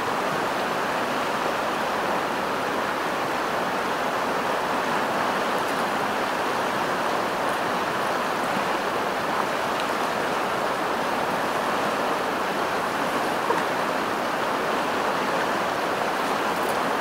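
Steady rush of a shallow river running over rapids, with a faint tick or two late on.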